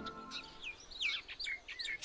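Small bird chirping: a string of quick, downward-sliding chirps, faint at first and louder from about a second in.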